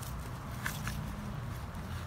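Bare hands handling a root ball and potting soil in a plastic planter: two brief soft rustles, about two-thirds of a second in and again just after, over a steady low background rumble.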